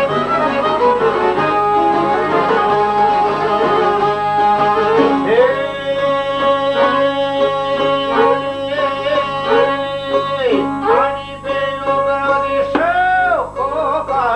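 Folk ensemble playing: a violin, a piano accordion, a long-necked plucked lute and a frame drum. About five seconds in, a singing voice enters with a wavering, ornamented line that swoops up and down over the instruments.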